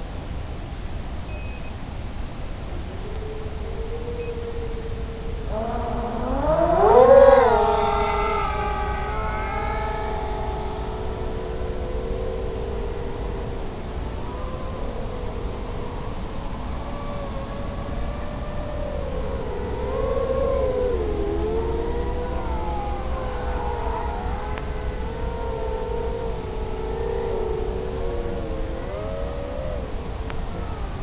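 FPV racing quadcopter's electric motors and propellers spinning up for takeoff about seven seconds in, a rising whine that is the loudest moment, then a steady multi-tone whine that wavers up and down in pitch with the throttle through the flight. A constant hiss runs underneath throughout.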